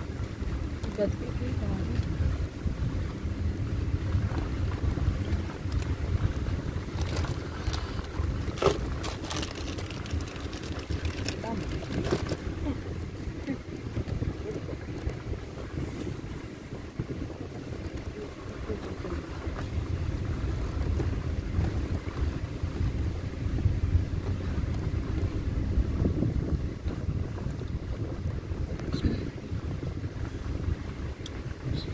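Steady low rumble of a safari vehicle driving slowly along a dirt forest track, heard from on board, with wind buffeting the microphone. A few sharper knocks and rattles come in the middle.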